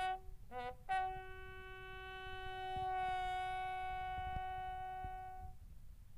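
A bugle sounding a military funeral call as a salute: two short notes, then one long held note lasting about four and a half seconds.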